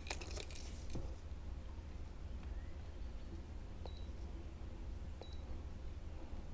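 Quiet low background rumble with faint handling noise: a brief crinkle of a plastic lure bag at the start, then a few faint clicks from the lures and hook of a digital hanging fishing scale, two of them late on with a short high blip.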